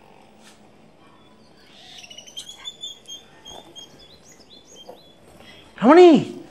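Faint bird chirps, a run of short high notes, some with a quick upward flick, over a low background hiss. Near the end a short, loud vocal exclamation rises and then falls in pitch.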